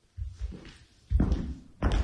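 Footsteps of hard-soled shoes on a wooden stage floor: three heavy thuds, each less than a second apart.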